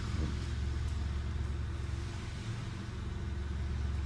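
Steady low rumble of a running car engine, even throughout with no rise or fall.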